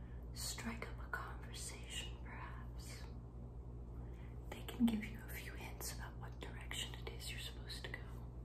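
A woman whispering close to the microphone, in breathy syllables, over a steady low hum. One short low bump about five seconds in.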